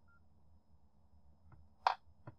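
A faint short electronic beep at the start, then a small click and a sharp, much louder click near the end, over a low steady hum.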